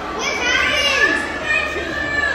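Children's voices, high-pitched and overlapping, in a large hall.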